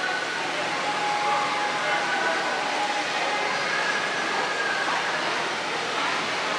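Steady hum and hiss of background noise in a large indoor public hall, with faint distant voices.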